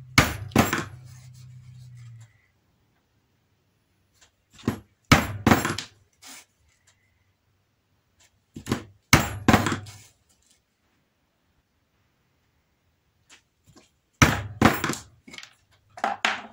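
A 5/16-inch round hole punch driven through a leather strap by blows of a plastic-headed mallet, giving sharp knocks in four separate groups of two to five blows, one group per hole, with pauses between. A low hum in the background stops about two seconds in.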